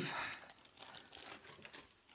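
Thin clear plastic sleeve crinkling as it is handled, loudest in the first half-second, then faint scattered crackles.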